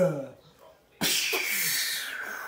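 A child's breathy, hissing vocal noise that starts suddenly about a second in, after a short pause, and runs on. Just before it, the end of a child's chanted voice fades out.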